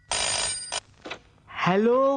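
A desk telephone's bell ringing once, a burst of just under a second right at the start, answered near the end by a man's voice.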